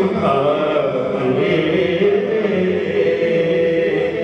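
Man singing an Urdu naat into a microphone, a devotional chant with long held, ornamented notes.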